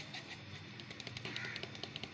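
Faint, irregular crackling clicks of a pizza baking in a hot salt-lined pot on the stove, over a low steady hum, with a brief higher-pitched sound about one and a half seconds in.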